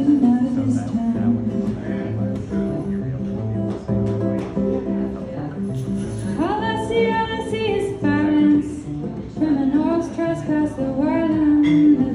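Solo acoustic guitar strummed in steady chords, with a woman singing over it: a long phrase about six seconds in and another near the end.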